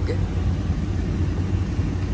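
Steady low rumble inside the cab of a 15-foot Ford box truck creeping along in highway traffic: engine and road noise.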